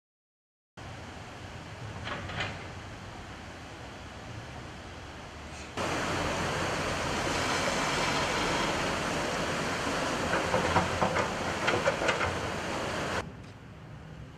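Fast-flowing, swollen floodwater rushing steadily, much louder from about six seconds in, with a few knocks a few seconds before the end.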